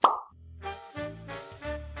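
A sudden pop at the very start, then an intro jingle: light music with a melody over a repeating bass line.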